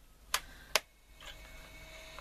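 Push-button switches on a Roberts RT22 transistor radio chassis clicking twice, less than half a second apart, as they are worked back and forth to spread freshly sprayed switch cleaner through the contacts.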